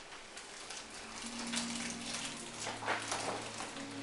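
Wrapping paper crackling and tearing as a Christmas present is unwrapped by hand, with a low steady hum coming in about a second in.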